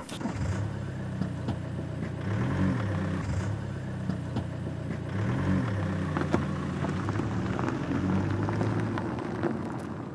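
Car engine running as the car pulls away, its note rising and falling briefly twice.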